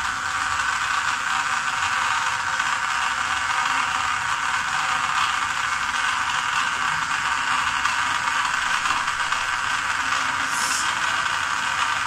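Small DC gear motor driving a belt conveyor, running with a steady, even whir.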